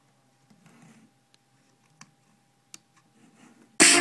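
Soft handling of a portable bar speaker with two faint clicks, as of its buttons being pressed, over a faint steady tone. Near the end, music starts suddenly and loudly from the speaker.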